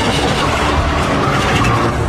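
A television drama's soundtrack playing loud: a dense, steady rumbling roar of sound effects as the undead dragon flies over the ruined Wall.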